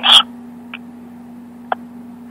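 A pause between speakers on a phone line: the tail of a man's last word, then a steady low hum on the line with two faint clicks.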